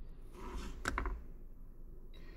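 Soft handling noise: a brief rustle, then a couple of small clicks about a second in, from hands working a phone and an earbuds case.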